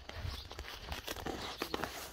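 Rustling and scattered light clicks from a hand-held phone being moved about, with footsteps through grass.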